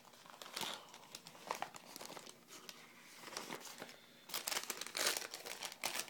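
Sterile wound-dressing packets being handled and crinkled, in scattered crackles that grow denser and louder about four seconds in.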